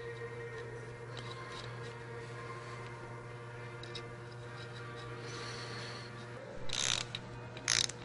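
Two short bursts of ratchet clicking from a wrench on the bolts of a diesel engine's front gear train near the end, over a steady low hum.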